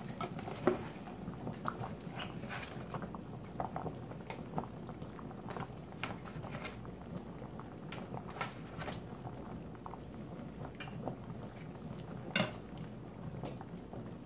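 Beef patties being pushed off a plate with a fork into a skillet of simmering gravy: a faint steady bubbling with light, scattered clinks of the fork against the plate and pan, one sharper clink near the end.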